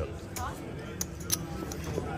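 Casino poker chips clicking against each other several times as hands stack and move them on the felt, over faint background music.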